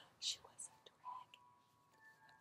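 A woman whispering and breathing faintly, with a few short hissy bursts in the first second and a soft murmur just after.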